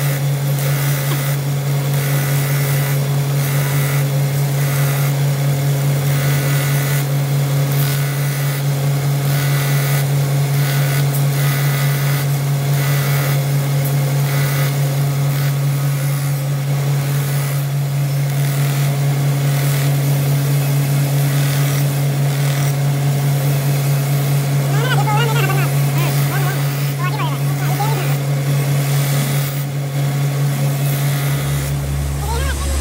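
A belt grinder runs with a steady motor hum while a steel knife blade is ground against the abrasive belt over its contact wheel. The grinding noise swells and eases many times as the blade is pressed on and lifted off.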